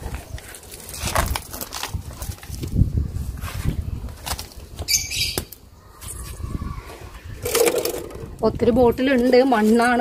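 Loose potting soil scooped and scraped by hand and with a plastic scoop on a hard floor: a run of irregular rustles and scrapes. A voice comes in near the end.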